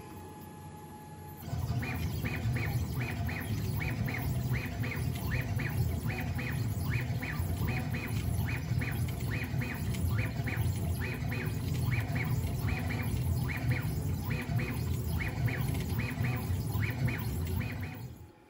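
Onefinity CNC's stepper motors driving the gantry through a carving job set to a high max jerk of 10,000, starting about a second and a half in: a steady low hum with short high chirps repeating about two to three times a second as the machine changes direction.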